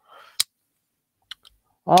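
One sharp click a little under half a second in, then two faint clicks about a second later, against near quiet.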